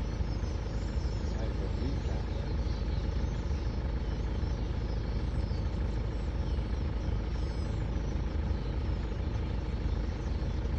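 A vehicle engine idling steadily, a low even rumble throughout.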